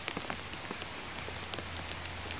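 Light rain falling, with many small scattered drop ticks close to the microphone over an even patter and a steady low hum.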